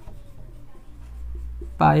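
Marker pen scratching on a whiteboard as a formula is written, faint, over a low steady hum; a voice starts near the end.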